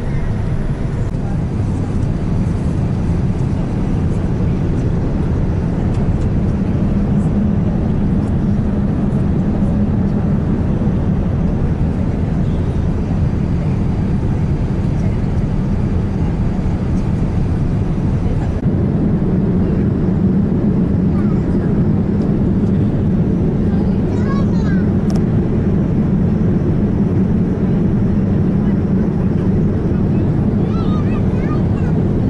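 Steady rumble of an airliner's jet engines and rushing air, heard inside the passenger cabin. The tone changes slightly about two-thirds of the way through.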